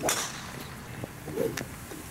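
A golf club swished through the air in a practice swing: one quick, sharp swish right at the start, then it is quiet.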